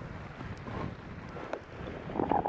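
Wind buffeting the microphone of a rider-carried camera during a descent through powder snow, a steady low rumble with the hiss of snow sliding underfoot.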